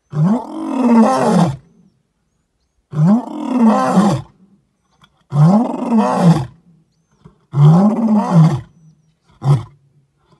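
Male lion roaring: four long roars, each rising and then falling in pitch, followed near the end by one much shorter call.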